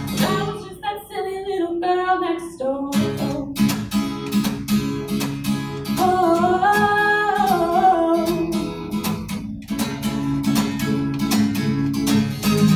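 A woman singing live to her own strummed acoustic guitar. The strumming thins out near the start, leaving mostly voice, then comes back in a steady rhythm about three seconds in. A long sung note is held in the middle.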